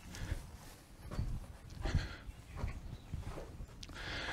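Soft footsteps of people walking into a concrete bunker over a dirt floor, several slow steps.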